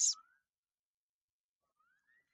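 The narrator's voice ends a word at the very start, then near silence, with a faint thin tone rising in pitch over the last second.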